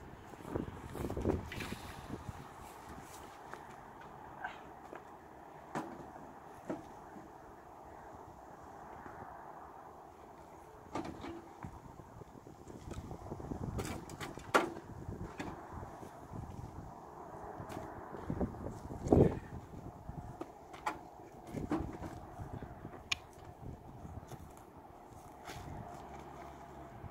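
Scattered knocks and clatters of someone working at a campfire and handling firewood and camp gear. The loudest knock comes about 19 seconds in.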